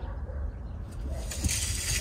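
Faint rustling of a hand and a steel tape measure sliding over a fabric mattress sheet. It grows a little louder about one and a half seconds in, over a low steady rumble.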